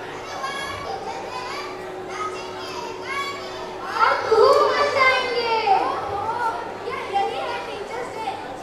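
Children speaking lines into microphones in a large hall, one voice after another, with a louder, more animated voice from about four seconds in.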